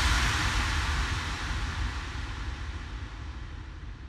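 Closing tail of a melodic techno / progressive house track: after the last beat, a wash of synthesised noise over a deep rumble dies away steadily, its top end sinking as it fades.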